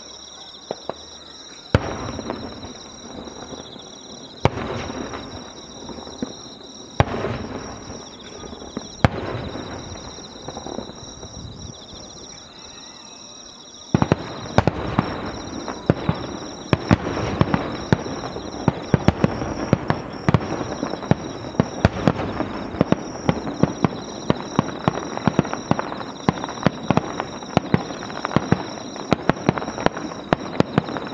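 Aerial firework shells bursting, a few single booms with rumbling tails two to three seconds apart, then about halfway through a rapid barrage of many crackling reports that goes on to the end.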